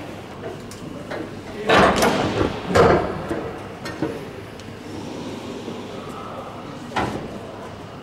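A few loud knocks and bangs in the metal airframe: two close together about two and three seconds in, and a sharper one near the end.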